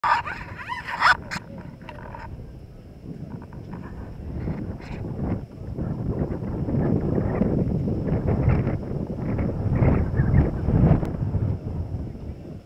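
Wind buffeting the microphone, a rough low rumble that swells through the second half, over open-air street background. A couple of sharp clicks about a second in.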